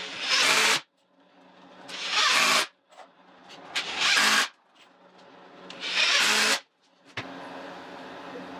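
Ryobi cordless drill driving screws into a wooden frame board: four short loud bursts about two seconds apart, each building up briefly before running at full speed.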